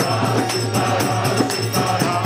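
Kirtan music: a group singing a devotional chant together over a steady low drone, with small hand cymbals striking a regular beat.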